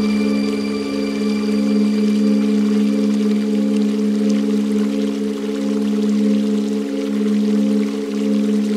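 Ambient meditation music: a steady drone of held, bowl-like tones that waver slowly, layered over running, pouring water that grows a little stronger a few seconds in.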